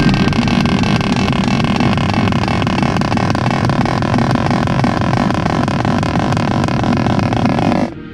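Marching snare drums playing a fast, continuous roll at a steady level over faint held tones, cutting off suddenly just before the end.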